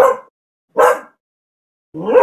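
A dog barking: short single barks, one right at the start, one just under a second in, and a third beginning at the very end.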